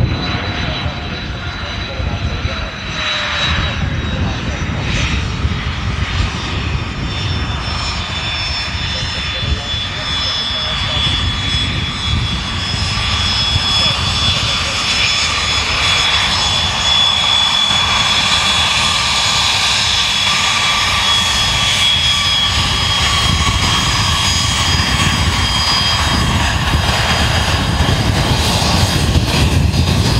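HondaJet HA-420's two GE Honda HF120 turbofans running at taxi power: a steady whine of several high held tones that drift slightly in pitch, growing louder as the jet comes closer. Underneath is a low rumble of wind on the microphone.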